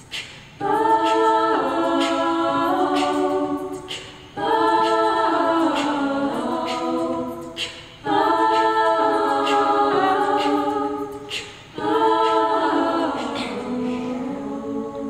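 Women's a cappella group singing four long held chords in close harmony, each about three seconds, with brief gaps between them; near the end the last chord slides down to a lower one.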